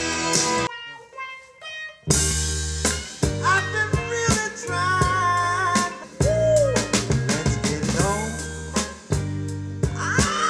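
Music with drum kit and bass played back through Mayfly Audio MF-201a loudspeakers. It thins out for about a second near the start, then the drums and a strong bass line come back in under a gliding melody.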